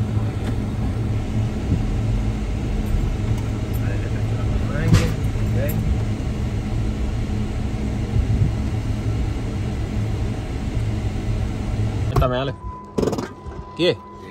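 Jeep Wrangler heard from inside the cabin while driving over a rough, potholed road: a steady low rumble of engine and tyres, with a single knock about 5 seconds in. The rumble stops abruptly about 12 seconds in.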